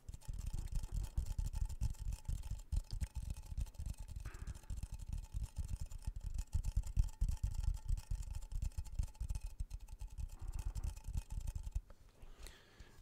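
Fast fingertip tapping on a hand-held object pressed close to the microphone: a dense, rapid run of soft, deep taps.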